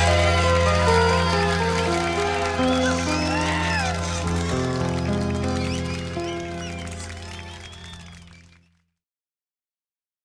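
Ending of an Indonesian pop song: a held final chord over a steady bass note, with high sliding notes above it, fading out over about eight seconds and then stopping, followed by silence.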